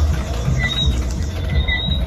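Low, irregular rumble of a phone microphone being handled while it is carried, with faint short high chirps recurring a few times.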